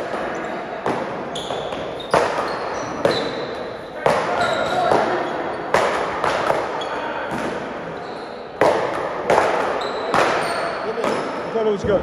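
Paddleball rally: sharp, echoing cracks of a rubber ball struck by paddles and rebounding off the wall and floor, coming irregularly about once a second, with short high squeaks of sneakers on the court floor.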